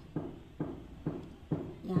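A steady series of knocks, about two a second, each dying away quickly.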